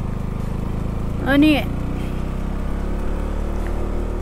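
KTM Duke 200's single-cylinder engine running steadily at low road speed, heard from the rider's seat. A voice sings one short phrase over it about a second and a half in.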